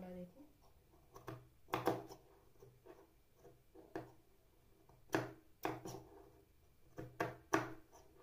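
Scissors snipping through fabric in a series of sharp, irregular cuts, about eight in all.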